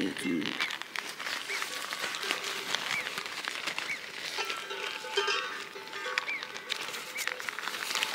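Nylon fabric of a pump sack and inflatable sleeping pad rustling and crinkling as they are handled and their valves fitted together, over soft background music with repeating light high notes.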